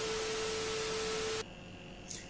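TV static hiss with a steady test-tone beep, a glitch transition sound effect played over colour bars. It lasts about a second and a half, then cuts off suddenly.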